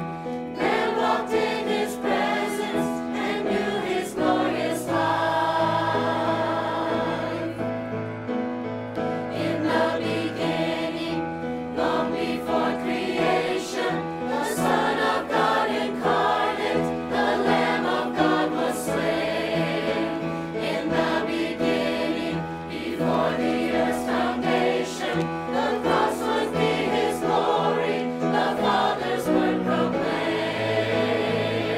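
Mixed church choir of men and women singing a sacred song, with sustained low notes under the voices.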